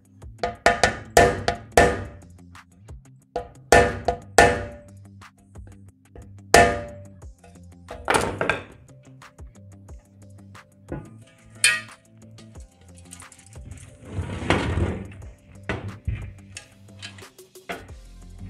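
A hammer strikes a wooden block held against the corner of an aluminium door frame, about eight sharp knocks spread over the first twelve seconds, tapping a slightly misaligned corner joint back into line. A longer scraping sound comes about fourteen seconds in, with faint background music underneath.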